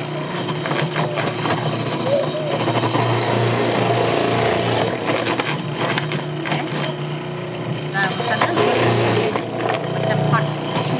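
Electric food processor running steadily, its shredding disc grating chunks of peeled kabocha squash as they are pushed down the feed tube.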